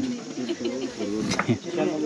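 People talking over a steady high chirring of insects, with one sharp click a little past the middle.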